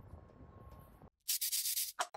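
Faint background hiss that cuts to silence, then about a second and a half in a short scratchy scribbling sound effect, like a pen writing quickly in a few fast strokes.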